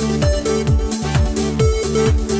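Instrumental passage of an upbeat pop song with no singing: a drum kit keeps a steady driving beat of about three kicks a second under cymbals, bass and held higher notes.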